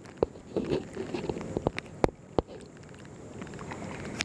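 Water washing and lapping along the fiberglass hull of a sea kayak as it is paddled, with about five sharp clicks or knocks in the first half.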